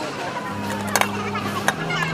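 Background music with sustained bass notes that step down in pitch, over the chatter of a crowd, with two sharp clicks about a second in and again just after.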